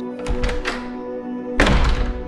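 Door sound effect as the door is unlocked and opened: a low thud, then a louder thunk about a second and a half in, over steady background music.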